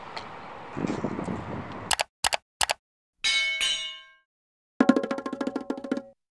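Faint outdoor ambience at first. About two seconds in come three quick sharp clicks, then a bright chime that rings out for about a second. After a moment of dead silence a rapid clicking pattern with steady tones begins: an edited sound-effect and music transition leading into a title card.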